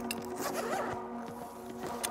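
A backpack's water-resistant YKK AquaGuard zipper being pulled open along the back laptop compartment, over soft steady background music.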